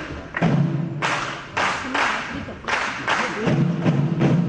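Live ensemble music led by frame drums struck in a steady beat, about two heavy strokes a second, over a low sustained bass note.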